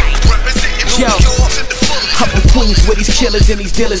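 Hip hop track: a rapper rapping over a beat with regular heavy bass kicks.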